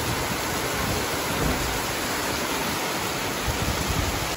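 Heavy rain falling steadily on paved ground, an even hiss with no breaks.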